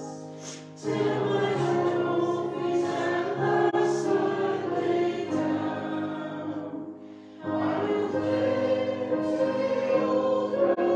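A hymn sung by a group of voices in slow, held phrases, with a short break between phrases just before one second in and another about seven seconds in.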